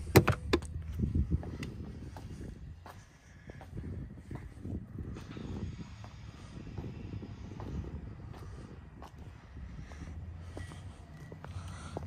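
A plastic hatch cover on an RV's utility port snapping shut with a few sharp clicks, then footsteps on asphalt over a low steady hum.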